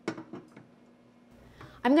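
A few light clicks and knocks of a saucepan on a gas stove grate in the first half-second, over a faint steady hum. A woman starts speaking near the end.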